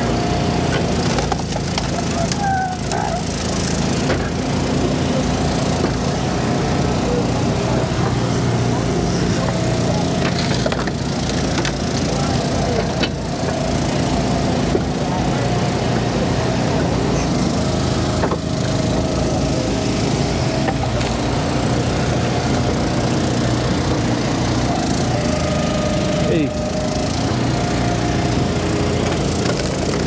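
Eastonmade log splitter's gas engine running steadily, with a higher whine that comes and goes every few seconds as it works. Sharp cracks of wood splitting and split pieces clattering into a wire-cage tote.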